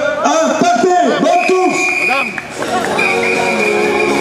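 Loud voices calling out at the start of a running race, just after a countdown. Music comes in a little after the middle and carries on.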